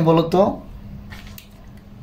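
A man's voice says a couple of words, then a quiet stretch with a few faint clicks about a second in.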